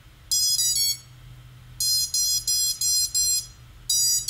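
Quadcopter ESCs beeping through the brushless motors, their startup tones as they restart after being disconnected from the configurator: three short notes rising in pitch, then a run of five evenly spaced beeps, then another group of beeps starting near the end.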